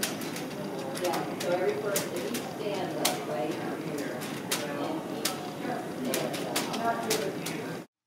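Faint, echoing voices in the background with scattered light clicks and taps; the sound cuts out abruptly near the end.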